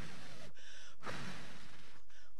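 Breath blown in hard puffs at a pinwheel, close to a handheld microphone: two blows in the first second, then fainter breath.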